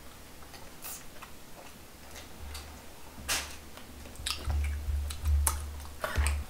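Close-miked eating sounds: a person chewing food, with scattered sharp wet mouth clicks and smacks, and a low hum under it that grows louder in the second half.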